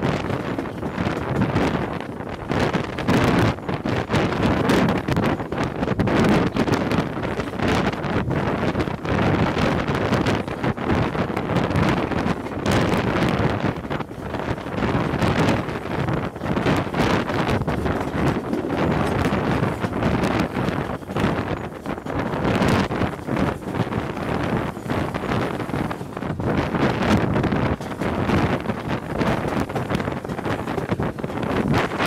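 Wind buffeting a microphone held out of a moving train's carriage window, over the running noise of a train hauled by two steam locomotives.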